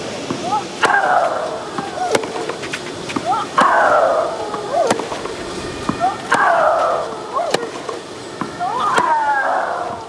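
Tennis rally on clay: about seven racket-on-ball strikes, roughly one every 1.3 s. Every other strike comes with a player's loud grunt that falls in pitch.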